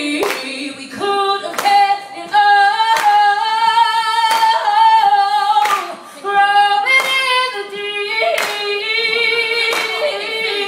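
A woman singing a cappella through a microphone, holding long notes and sliding runs without clear words. An audience claps a steady beat under her, about one clap every 0.7 seconds.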